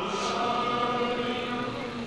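Male voices holding a steady chanted note at the tail of a sung devotional recitation (manqabat), fading slowly over about two seconds.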